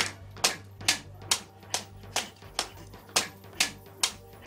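Hard-soled leather shoes stepping on a hard floor at an even pace, about two sharp steps a second.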